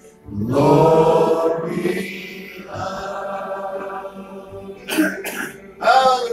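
A person's voice close to the microphone: a long wordless vocal sound that rises in pitch about half a second in and trails on for several seconds, then short throat clearing near the end.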